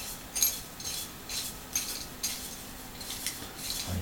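Brass lamp fitting scraping and clicking against a glazed ceramic lamp base as the base is turned to screw the fitting in: a string of small, irregular clicks and rubs.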